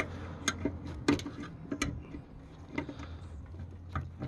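Flathead screwdriver tip prying at a plastic wiring-connector tab, giving several sharp, irregular ticks and clicks of metal on plastic.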